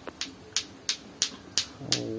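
Lato-lato clackers, two hard plastic balls on a string knocking together in a steady rhythm of sharp "tok tok tok" clacks, about three a second.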